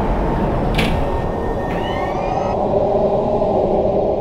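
Logo-sting sound design: a loud, steady low drone with a sharp swooshing hit about a second in and a cluster of gliding high tones around two seconds in.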